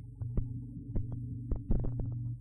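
Low electronic drone with deep thumps a second or so apart, pulsing like a heartbeat: the opening of a radio jingle or music bed.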